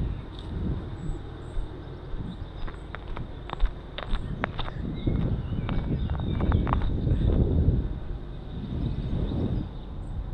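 Wind buffeting a small action camera's microphone, a low rumble that swells and fades, with a few short high chirps about three to five seconds in.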